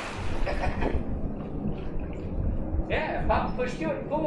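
Water sloshing as a golden retriever swims across a pool just after jumping in, over a low rumble of wind on the microphone. A few short rising-and-falling calls come near the end.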